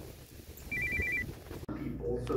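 A brief electronic alert: two high tones alternating quickly, about five times each, lasting about half a second, over a low rumble. The rumble cuts off suddenly near the end.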